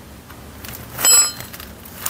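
A single short metallic clink about a second in, ringing briefly with a bright, bell-like tone: a steel ring spanner being put down after loosening a car's oil drain plug.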